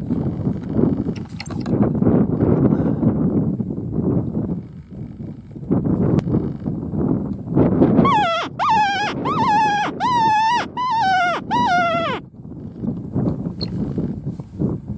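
A hand-blown fox-hunting call sounding a quick string of about half a dozen wailing squeals, each sliding down in pitch at its end, starting about eight seconds in and lasting some four seconds. A low rumble of wind on the microphone fills the rest.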